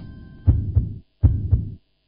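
Heartbeat sound effect in a TV sponsor ident: two deep double thumps, lub-dub, about three quarters of a second apart.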